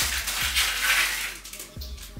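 Boxed plastic eyelash-extension trays rustling and clattering as they are handled and pulled from a stacked pile, lasting about a second and a half, then dying away.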